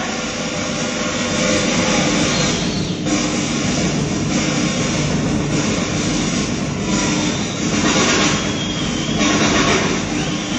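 Rock drum kit in a live drum solo: fast, continuous drumming with cymbals crashing, heard as a dense wash on an audience bootleg recording.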